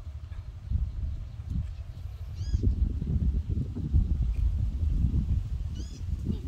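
Wind buffeting the microphone in uneven gusts, a rumble that swells from about a second in. A short, high arched call sounds twice, about two and a half seconds in and again near the end.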